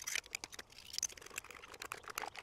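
Metal fork whisking beaten raw eggs in a ceramic bowl: a quick, irregular run of light clicks as the fork strikes the sides of the bowl.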